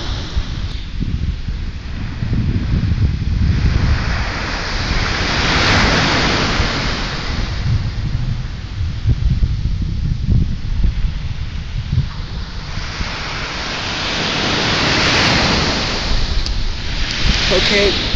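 Small waves breaking and washing up a sandy beach, the hiss swelling and fading every several seconds, with wind rumbling on the microphone.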